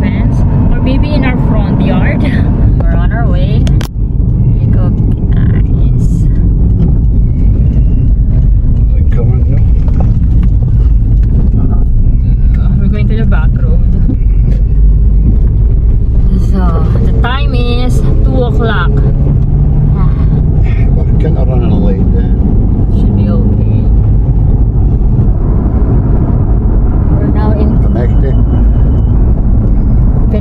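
Steady low rumble of a car's engine and tyres heard from inside the cabin while driving, with voices talking briefly at times.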